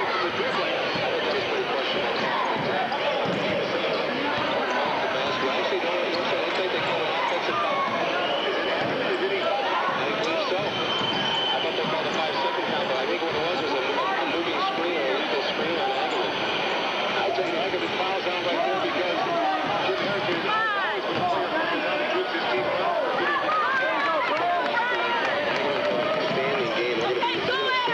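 Gymnasium crowd chatter during a basketball game, many voices talking and calling out at once at a steady level, with a basketball being dribbled on the hardwood floor.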